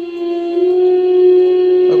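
A single steady electronic note with overtones is held throughout: the projector's startup sound playing through its built-in speaker as it boots. A fuller strand of music starts just before the end.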